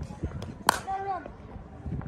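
A single sharp crack about two-thirds of a second in, typical of a cricket bat striking a ball in the nets, followed at once by a brief call from a voice that falls in pitch. A few lighter clicks come before it.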